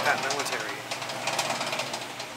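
Faint voices of people talking in the background over a steady hiss, with rapid, irregular light clicking throughout.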